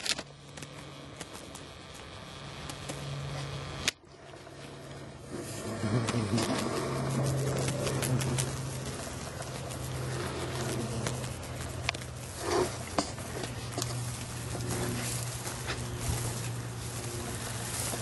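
Black soldier flies buzzing in flight inside a screened enclosure: a low, steady hum that swells for a few seconds as flies pass close, cutting out briefly about four seconds in, with scattered faint clicks.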